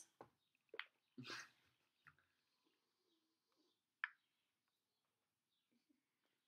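Near silence: quiet room tone, with a faint breathy laugh about a second in and a few small, faint clicks and puffs of breath.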